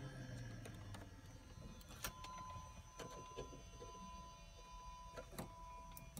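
Quiet cockpit with a low hum that fades away in the first second, then a few faint clicks and taps of handling, about two seconds in and again near five seconds.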